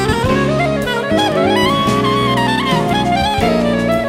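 Jazz quintet playing: a saxophone carries a melodic line that climbs to a high point and steps back down, over bass and drums.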